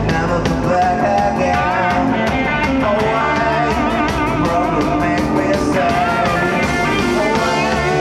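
A rock band playing live at full volume: distorted electric guitars, one a Telecaster, over bass and a Tama drum kit with steady cymbal strokes, and a lead vocal on top.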